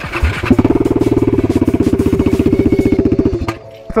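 Husqvarna motorcycle engine running with its new aftermarket exhaust come loose, so it sounds loud and open. It gives a rapid, even pulsing at steady revs for about three seconds and then cuts off.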